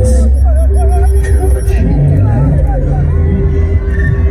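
Live concert sound picked up loud on a phone in the crowd: heavy bass from the stage PA with voices wavering over it, and crowd noise.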